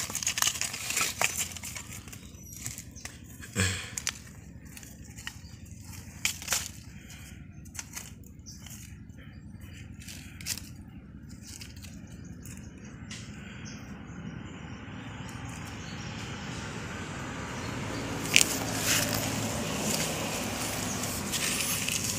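Dry fallen leaves crackling and rustling in short bursts of clicks as a hand pushes them aside on soil. In the second half a steady hiss grows gradually louder.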